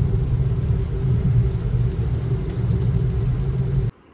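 Steady low rumble of a car heard from inside the cabin while driving on a wet road: engine and tyre noise. It cuts off abruptly just before the end.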